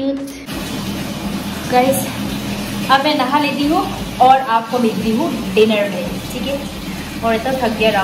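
A woman talking in a small tiled bathroom over a steady hiss of running water from a tap.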